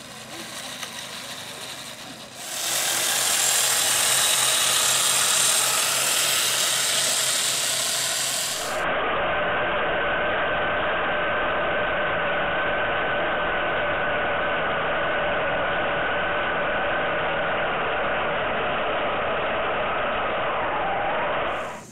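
Small electric motor and gearbox of a 1:14-scale RC Tatra 130 model truck whining steadily, heard loud and close from a camera riding on the truck. It comes in suddenly about two seconds in, after a quieter stretch.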